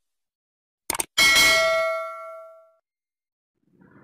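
A short double click about a second in, then a single bell ding that rings out and fades over about a second and a half. It is the sound effect of a subscribe-button animation, a mouse click followed by the notification-bell chime.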